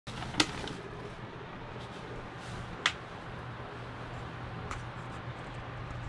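Steady hum and air noise of an electric pedestal fan running, broken by two sharp clicks and a fainter one later.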